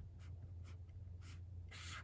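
Felt tip of a Zig Clean Color Dot marker on notebook paper, putting down marks in four short strokes, the last one near the end a little longer and louder.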